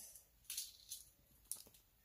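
Faint jingling of metal jewelry, a chain necklace and bangles, with a few light clinks as the necklace is held up and moved.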